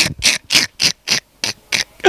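A man laughing hard in a quick run of breathy, wheezing bursts, about five a second, with hardly any voice in them.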